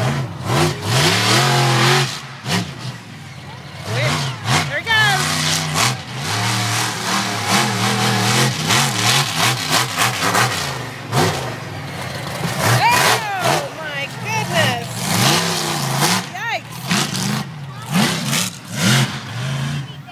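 Monster truck engine revving up and down over and over as the truck jumps and drives, with onlookers' voices and shouts over it.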